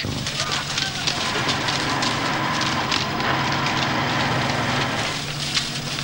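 Stone-crushing and grading plant at work: a machine runs with a steady hum while broken stone rattles and clatters continuously along steel chutes.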